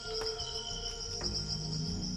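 Crickets chirping steadily in a fast pulsing trill, with a low music bed that grows louder about a second in.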